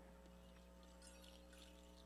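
Near silence: only a faint steady hum in the audio feed.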